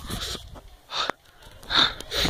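A person breathing hard close to the microphone, with short gasping breaths about a second apart, the loudest near the end.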